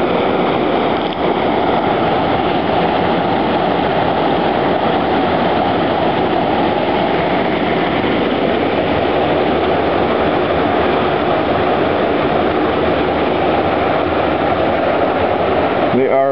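Water rushing through a fish trap gate and down a fish ladder, a steady loud whitewater rush.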